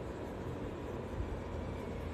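Steady low background hum with a light hiss, room tone with no distinct events.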